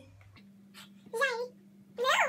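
Mostly quiet room with a faint steady hum. A bit over a second in, a girl makes one short wavering vocal sound, like a hum or a drawn-out syllable.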